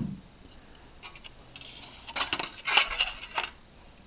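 A piece of thin aluminium cut from a beer can, shaped into a small car body, being handled and turned over on a wooden table: a cluster of light metallic clinks and crinkles starting about a second and a half in and dying away shortly before the end.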